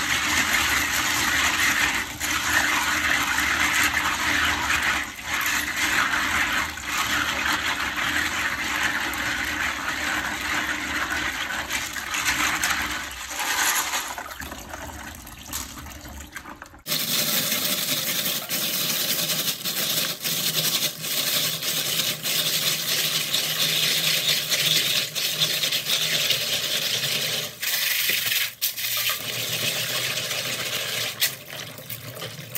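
Tap water running into a plastic bowl while hands scrub clams in a plastic basket, the shells knocking and clicking against each other. A little over halfway through, the sound changes abruptly.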